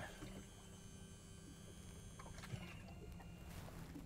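Faint steady whine and hum of a Power-Pole shallow-water anchor's motor as the pole is lowered, with a small click about two and a half seconds in.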